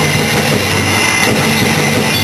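A live rock band, with distorted electric guitar, bass and drums, playing loud. It comes through as a dense, steady wall of sound over held low bass notes.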